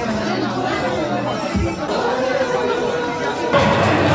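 Voices chattering over background music, then an abrupt cut about three and a half seconds in to louder music with crowd noise.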